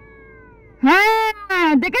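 A run of loud, meow-like cries starting about a second in. Each call bends up and then down in pitch, and the last is drawn out past the end.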